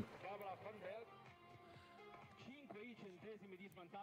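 Faint background voices with music, far below the level of the commentary.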